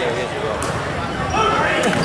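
Spectators talking and calling out across a gym during a basketball game, with a basketball bouncing on the hardwood court and a couple of short sharp sounds, about two-thirds of a second in and near the end.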